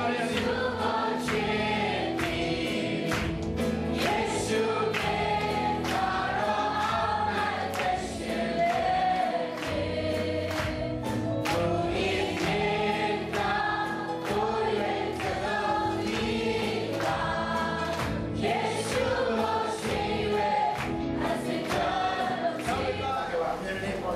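Amplified gospel worship song: lead singers on microphones and a group of voices singing together over accompaniment with sustained low notes and a steady beat.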